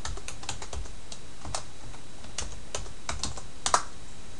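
Typing on a computer keyboard: irregular key clicks as a password is entered, with a louder keystroke near the end as the sign-in is submitted, over a steady low hum.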